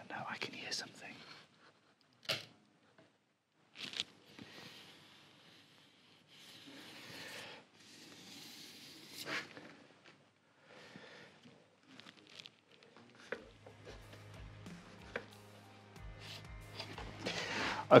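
A small hand tool scraping and clicking against the wooden bass neck at the headstock end, in short strokes with a few longer rasps. A quiet music bed comes in about two-thirds of the way through.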